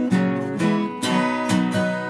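Two acoustic guitars strummed together, about two chord strokes a second, with ringing sustained notes between the strokes.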